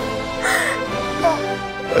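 People laughing, in short falling bursts, over background music.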